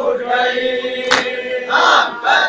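A group of mourners chanting a Muharram nauha (mourning lament) together on a held note. About halfway through comes one sharp slap of matam, hands striking chests, part of a steady beat of about one stroke every one and a half seconds.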